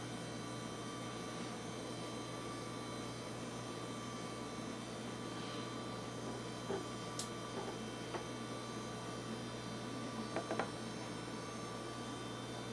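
Steady low electrical hum with a faint hiss, with a few faint soft clicks in the second half.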